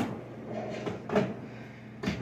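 A sharp knock at the start and a softer one about a second later as packaged crescent roll dough is put away into the refrigerator, a door or drawer being handled.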